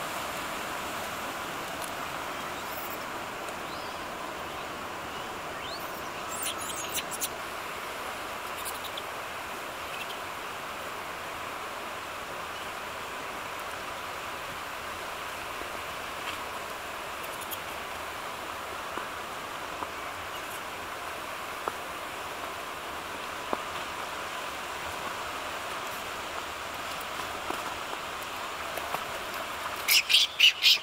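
Steady rush of running water, even throughout, with a few faint clicks and taps.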